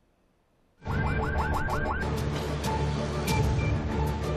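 Ambulance siren in its fast yelp mode: quick rising sweeps, about six a second, starting about a second in and lasting about a second. It is followed by a steady low rumble of engine and traffic.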